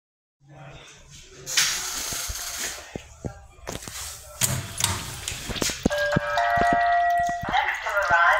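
Commercial urinal's flush valve flushing, with water rushing for a second or so and then again with a few knocks. Near the end a few steady tones sound, followed by a voice.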